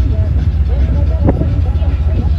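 Deep steady rumble of a river ferry's engine, with people talking over it.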